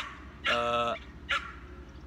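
A dog yelping and whining: one longer, high whining cry about half a second in, with short yips before and after it.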